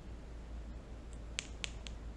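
Three quick, sharp little clicks about a quarter of a second apart, a little over a second in, over a faint steady low hum.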